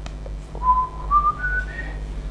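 A phone's FaceTime call chime: four short clear tones stepping upward in pitch, starting about half a second in, signalling that the call has connected.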